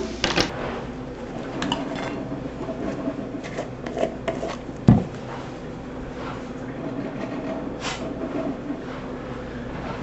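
Kitchen handling clatter: light clinks and knocks of utensils and dishes, with one louder thump about five seconds in, over a steady low hum.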